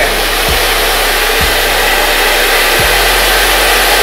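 Handheld hair dryer running steadily on its cold setting, blowing close to the hairline to dry lace-wig glue until it is no longer sticky.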